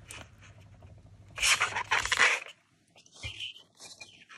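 Hands handling a plastic laminating pouch and dried flowers. A brief rustle of the film comes about a second and a half in, with faint scratchy handling sounds around it.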